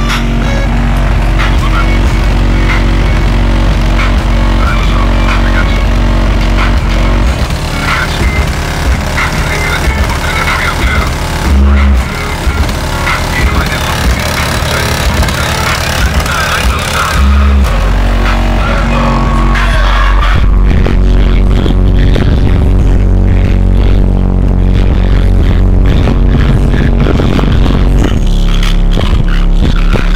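Bass-heavy electronic music played loud through a car audio system's Focus Acoustics Black MK4 15D2 subwoofer, driven by a Focus Acoustics FX-1500D amplifier and heard from outside the car. Deep bass dominates, drops back for about twelve seconds in the middle with two short, heavy bass hits, then returns full.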